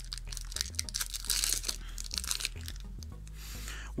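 A foil Yu-Gi-Oh! booster pack wrapper being torn open and crinkled by hand: a run of crackles and rustles, louder about a second and a half in and again near the end.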